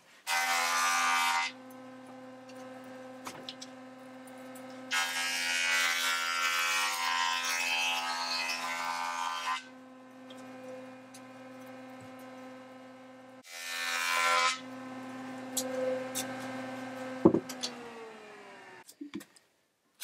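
Benchtop jointer running with a steady motor hum while the edge of a rough barn-wood board is passed over the cutterhead to flatten it for gluing: a short rasping cut near the start, a long cut of about five seconds, and another short cut later. Near the end the motor winds down and there is a sharp knock.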